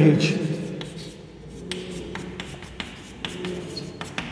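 Chalk writing on a blackboard: a run of short, irregular taps and scratches as words are chalked onto the board.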